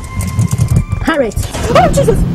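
A car's starter cranking as the ignition key is turned, with the engine catching. Then a woman gives a few short wordless cries.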